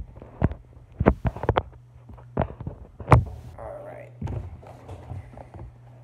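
Irregular knocks and taps from a cardboard shipping box being handled, about eight in all, the loudest about three seconds in, over a low steady hum.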